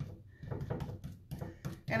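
Paintbrush tapping and swirling thick chalk paint, mixed with salt-wash texture additive, onto furniture: a string of soft, irregular taps and brushing scuffs, several a second.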